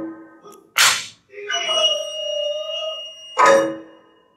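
Kabuki dance accompaniment: two sharp cracks about two and a half seconds apart, with one long held note between them.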